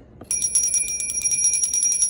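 Small brass hand bell rung rapidly, its clapper striking over and over in a continuous high ringing that starts about a third of a second in.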